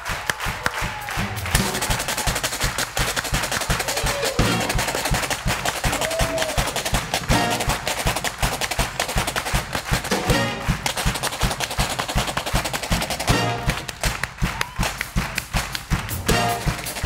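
Live band with upright bass, saxophones and drums playing an upbeat number, with a washboard struck and scraped with a stick in a fast, even rhythm.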